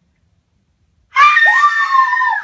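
After a quiet first second, a person suddenly lets out a loud, high-pitched scream of fright at being scared by a prank.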